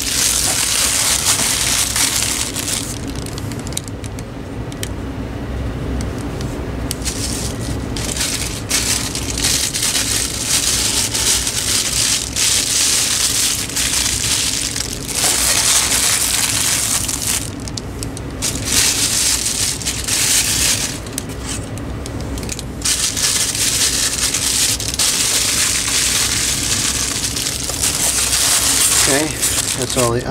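Clear plastic parts bags crinkling and rustling in the hands, with cardboard and foam packing rubbing and scraping as parts are fitted into a box. It comes in irregular bursts with short lulls.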